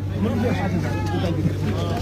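Background chatter of a crowd of men over a steady low hum.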